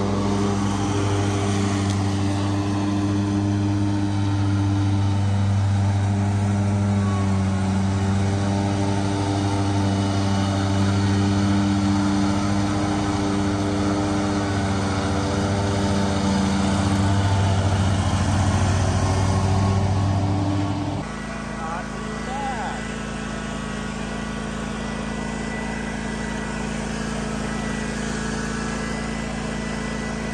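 Commercial ride-on lawn mower's engine running steadily while mowing, holding one even pitch. About two-thirds of the way through it cuts abruptly to a different, quieter steady small-engine sound with a thin high whine.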